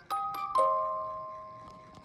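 Bell-like chime notes: two small chords struck about half a second apart, left to ring and slowly fade away.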